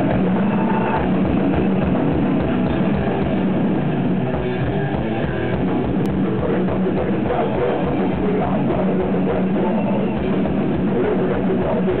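Heavy metal band playing live: distorted electric guitars over fast, driving drums, one steady loud wall of sound with no break.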